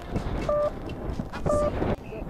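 A short electronic beep repeating about once a second, over wind buffeting the microphone.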